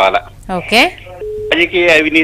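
Speech over a telephone line, thin and narrow-sounding, with a short flat tone about halfway through.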